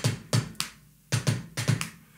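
Kick drum played with a foot pedal, heel up: a run of quick, sharp bass drum strokes with a short gap just under a second in.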